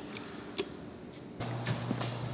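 A few faint light clicks, one of them an elevator call button being pressed, over quiet room tone. A low steady hum comes in about one and a half seconds in, with a couple more soft clicks.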